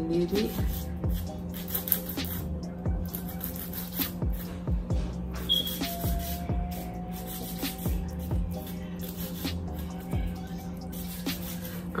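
Background music with a beat and sustained held notes.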